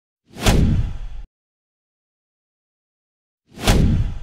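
Two identical cinematic whoosh sound effects with a deep boom beneath, each about a second long and cutting off abruptly, the second about three seconds after the first.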